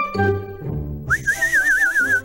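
Cartoon background music, then about a second in a high whistle that slides up and then wavers rapidly up and down, over a faint hiss.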